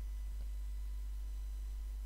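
A steady low electrical hum under a faint hiss, with no other sound.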